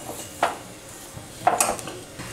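A metal spatula clinking against a tava twice, about half a second in and again about a second later, each with a short ring.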